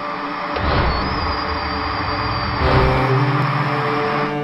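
Produced intro sting under glitch-animated title text: a dense droning noise with held steady tones and a thin high whistle. A deep rumble comes in about half a second in and drops out about three seconds in, leaving lower humming tones.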